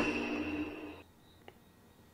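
A man's cough trailing off in the first second, then near silence with one faint click about halfway through.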